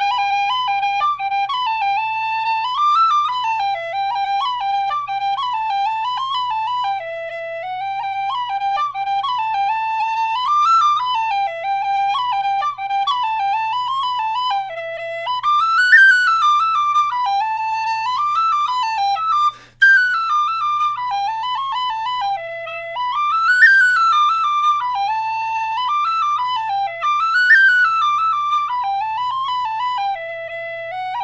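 Killarney tin whistle playing a lively tune at normal, full volume, with quick runs of notes and a brief breath break about two-thirds of the way through.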